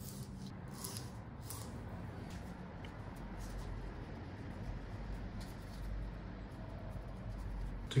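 A few faint taps of a sushi knife slicing a leaf on a plastic cutting board in the first second and a half. After that, only low, steady room hum with soft handling of the cut leaves.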